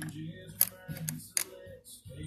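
A few sharp clicks and taps of plastic makeup containers being picked up and handled, four in about two seconds, with faint music underneath.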